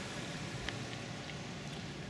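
Steady outdoor street background noise, an even hiss with a faint low rumble and a few light ticks; no train is running.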